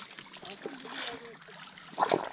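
Faint splashing water, with faint voices in the background.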